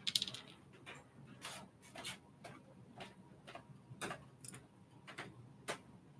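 About a dozen sharp, irregular plastic clicks from hobby nippers snipping parts off a plastic model-kit runner and the runner being handled. The loudest click comes right at the start, with another strong one near the end.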